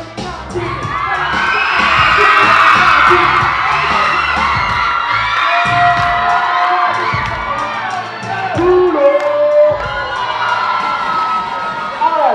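A crowd of schoolchildren cheering and shouting, swelling about a second in, with a few long held shouts near the middle, over music with a steady beat.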